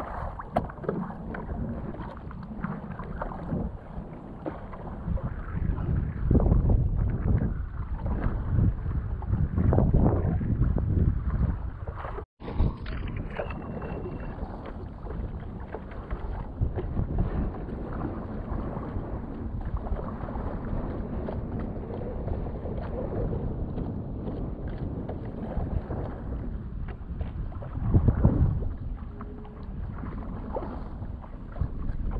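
Stand-up paddleboard paddle strokes and water splashing and lapping around the board, with wind gusting on the microphone. The sound cuts out briefly about twelve seconds in.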